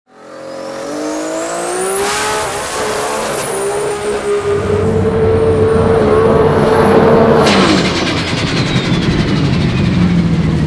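Turbocharged Ford Barra straight-six in a drag car accelerating hard, its note climbing steadily with a high whistle rising above it. The note drops away sharply about seven and a half seconds in, leaving a rough low rumble.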